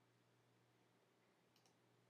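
Near silence, with a faint mouse click about one and a half seconds in.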